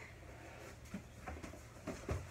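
Faint handling noise in a quiet room: a few soft knocks and rustles as heavy boxes are reached for and lifted, over a steady low hum.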